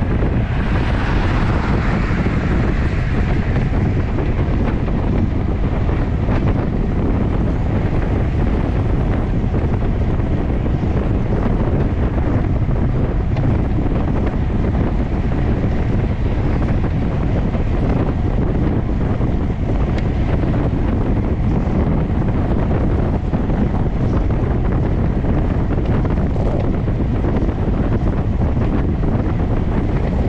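Steady, loud wind rush and buffeting on the microphone of a camera mounted on a road bike's handlebars at about 38 km/h. A brighter hiss swells for the first few seconds, then fades back into the rumble.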